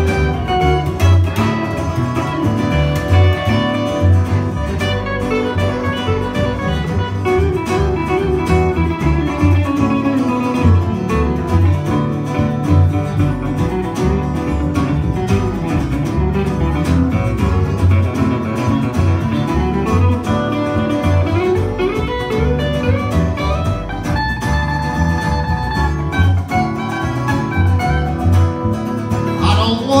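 Instrumental break of a country song played live on upright bass, acoustic guitar and archtop electric guitar: a moving guitar melody over a steady plucked bass line and strummed rhythm guitar.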